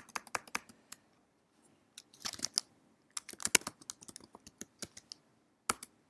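Typing on a computer keyboard: short bursts of keystrokes entering a terminal command, with a single louder key press near the end.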